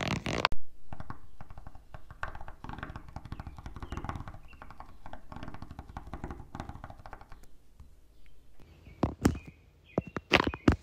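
Dubbed ASMR trigger sounds, not made by the roller in the picture. First a loud, sharp knock. Then several seconds of fast, dense clicking clatter standing in for a face roller rolling. A few sharp taps follow near the end.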